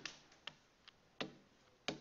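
A few faint, sharp clicks at uneven intervals, about half a second apart: a stylus tip tapping down on a tablet's writing surface as handwriting goes onto the screen.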